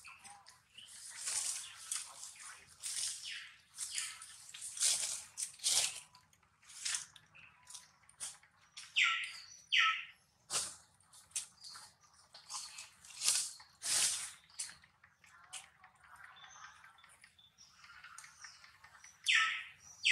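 Baby long-tailed macaque crying in short, high-pitched squeaks repeated again and again, with two clearer squeals about nine and ten seconds in.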